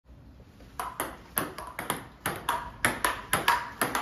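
Table tennis rally: the ball clicking off the paddles and bouncing on the table in a quick, even patter of sharp clicks, often in close pairs, about four a second, starting just under a second in.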